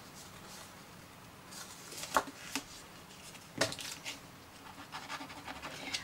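Quiet handling of card stock on a cutting mat: faint rustling and a few light taps, two close together about two seconds in and a sharper one a little past halfway.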